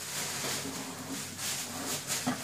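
Steady hiss of a covered pot of rice and chicken cooking on the stove, cutting in suddenly.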